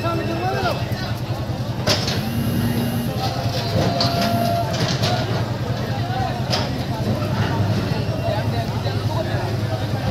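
Diesel engine of a JCB backhoe loader running steadily under a crowd's voices, with a few sharp knocks.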